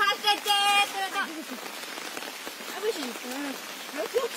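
Steady rain falling, with a girl's high voice in the first second or so.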